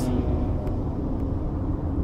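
Steady low rumble of road and engine noise inside the cabin of a moving 2020 Toyota RAV4.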